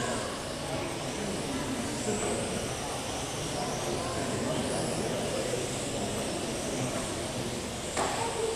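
1/12th-scale LMP12 electric RC race cars with 10.5-turn brushless motors lapping a carpet track, their faint high-pitched motor whines rising and falling as they accelerate and brake, over a steady murmur of voices in a reverberant hall.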